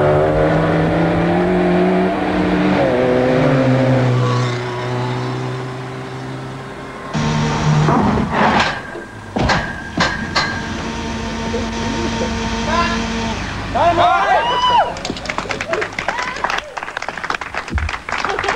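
Toyota Celica stunt car's engine revving hard as it accelerates down a dirt track toward a jump, its pitch climbing and then dropping with gear changes over the first seven seconds. Several loud thuds follow about eight to ten seconds in, and voices are heard near the end.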